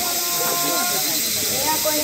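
Kagura accompaniment: a bamboo flute holds a long high note with a slide into it, breaking off about a second in before moving to new notes, over a constant bright hiss.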